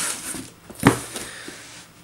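Cardboard shoebox handled and rustling, with one short knock a little under a second in as it is set down.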